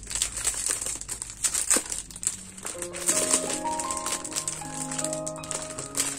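Clear plastic wrapping crackling and crinkling as it is pulled off a tablet case. A light melody of short steady notes comes in about halfway through and plays under it.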